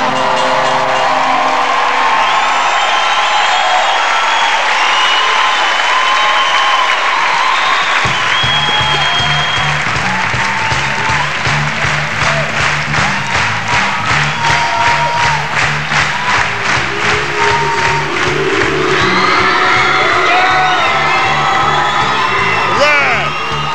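A live audience applauding and cheering over band music. About eight seconds in, a bass line with a steady beat comes in under the applause.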